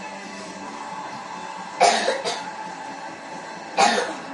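A person coughs twice, about two seconds apart, over steady background music.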